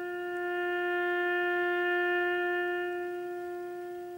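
Slow solo wind-instrument melody: one long held note that fades away near the end.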